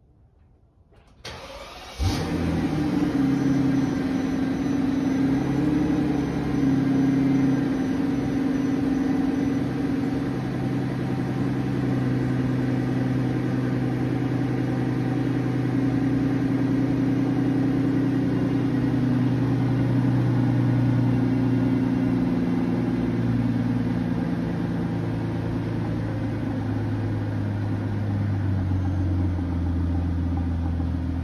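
Mercedes-Benz S600's twin-turbo V12 cold-started: a brief crank about a second in, catching at about two seconds, then a steady fast cold idle that settles lower near the end.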